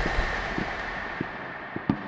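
Fading tail of an intro sound effect: a dying hiss with a faint steady high tone and scattered short crackles, after a heavy bass hit.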